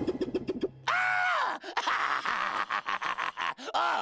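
A cartoon poodle's voiced cry of shock at being left bald. Short choppy sounds come first, then one cry about a second in that rises and then falls in pitch, then a quick run of short stuttering sounds.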